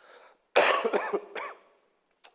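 A man coughing: a sudden loud cough about half a second in, trailing off over about a second.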